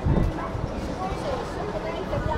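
Passersby talking on a busy pedestrian street, with footsteps on brick paving.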